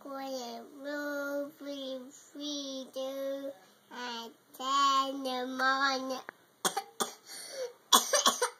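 A toddler girl babbling in a sing-song voice, a string of phrases with long drawn-out syllables. She laughs near the end, followed by a couple of short sharp sounds.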